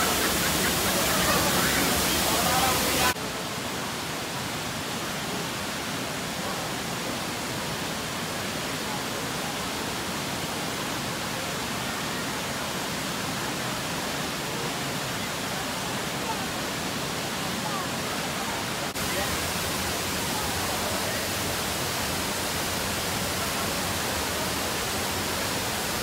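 Looking Glass Falls, a tall waterfall, pouring into its pool: a steady rushing water noise. The noise drops in level about three seconds in and comes back up near the end, as the view moves farther from the falls and then nearer. Faint voices of people are heard in the first few seconds.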